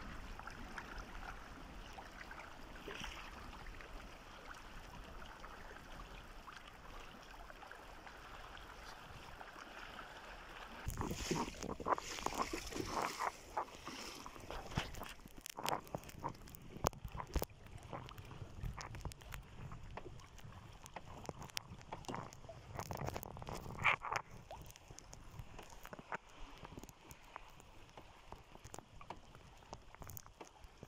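A canoe being paddled on a lake: a steady wash of water at first, then from about eleven seconds in, irregular splashes and knocks from paddle strokes and water slapping against the hull.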